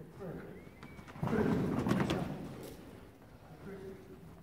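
A person's voice calling out loudly for about a second, a handler's command to a dog running an agility course, over running footfalls on the arena's sand floor.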